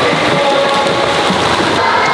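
Din of an indoor swimming pool: a row of children kicking and splashing at the pool edge, with children's voices echoing.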